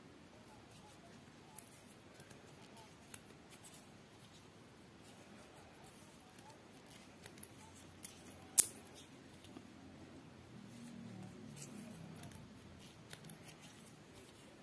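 Faint scattered clicks and rustles of a wooden tatting shuttle and thread being worked by hand, forming beaded chains on nylon line, with one sharper click about eight and a half seconds in.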